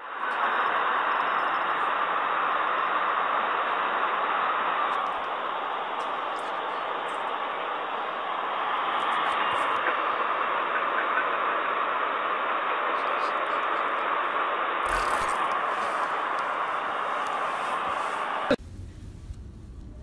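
Steady rushing noise with no clear pattern, ending abruptly with a click near the end.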